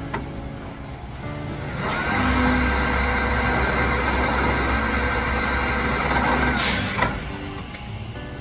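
Pillar drill press running as its bit is fed down into a part, a steady whine over rough cutting noise lasting about five seconds, starting and stopping abruptly. A single sharp knock follows near the end.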